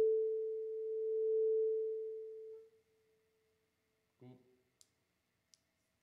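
A single vibraphone note struck for a sound check, a clear pure tone that rings on and fades out within about three seconds. A brief faint low sound and two light clicks follow near the end.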